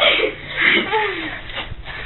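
A boy's voice making two short wordless vocal sounds in the first second, then quieter.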